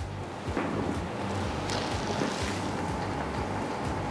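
Steady room noise: an even hiss with a low hum and a faint steady whine, as from a bar's ventilation or refrigeration, with a few faint soft sounds in the first second or two.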